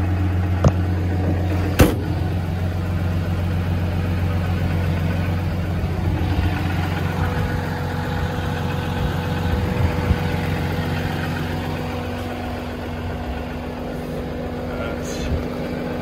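Cummins 6.7 L inline-six turbodiesel idling steadily, with a sharp knock about two seconds in and a steady higher tone joining in the second half.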